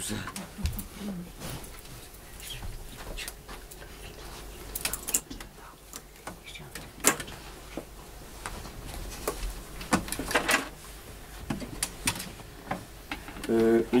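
Handling noise as a hurdy-gurdy is picked up and settled on the player: scattered clicks, knocks and rustles, with no notes played.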